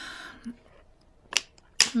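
Two sharp plastic clicks, about half a second apart, a little past the middle, as a small plastic glitter bottle with a blue cap is picked up and handled.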